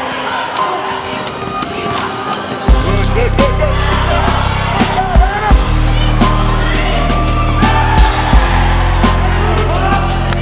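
Background music whose heavy bass line and beat come in about three seconds in, laid over basketball game sound: sneaker squeaks on the court and ball bounces.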